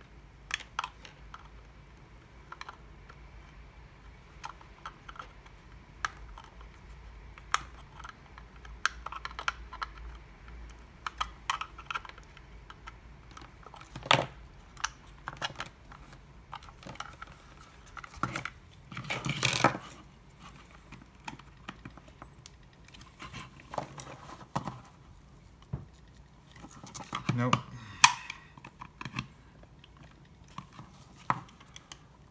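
Flush side cutters nibbling away the edge of a plastic project box in sharp, irregular snips, with clicks and rattles of the plastic case being handled; a denser run of scraping and snapping comes about two-thirds of the way through and again near the end.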